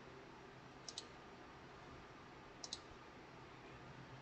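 Near silence with a faint hiss, broken twice by a soft, high double click, about a second in and again near three seconds.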